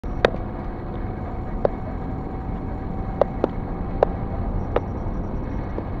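A car driving on an asphalt road, heard from inside the cabin: steady engine and tyre noise, with a handful of sharp clicks at irregular intervals.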